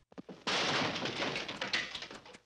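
Cartoon sound effect: a few faint taps, then from about half a second in a loud, coarse rushing or scraping noise lasting about a second and a half.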